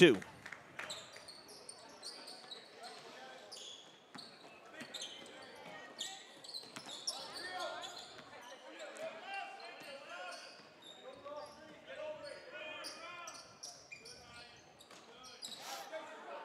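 Gymnasium ambience of scattered crowd and player chatter, with basketballs bouncing on the hardwood floor.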